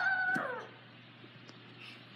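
A child's high-pitched drawn-out yell, held and then falling in pitch as it fades out about half a second in. Faint outdoor background follows.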